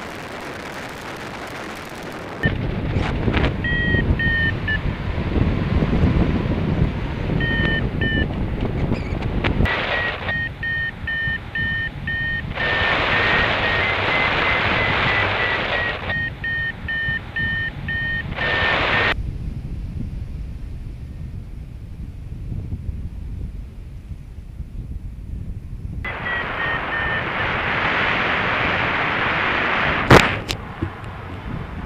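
Wind rushing over the microphone of a hang glider in flight, swelling and easing in stretches, with an electronic flight variometer beeping in runs of short high beeps whose pitch rises a little in the middle. Beeps like these are the vario's climb tone, signalling that the glider is in rising air.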